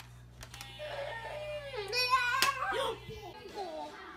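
A toddler vocalising in drawn-out, wavering cries that swell to their loudest about halfway through. A steady low hum runs underneath and stops a little after three seconds in.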